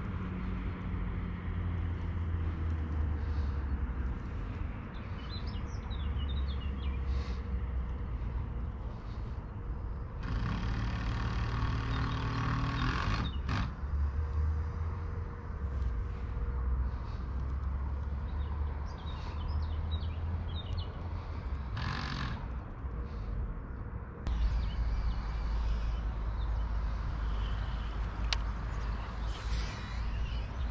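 Outdoor lakeside ambience: a steady low rumble with birds chirping now and then, a louder whirring stretch about a third of the way in, and a few sharp clicks.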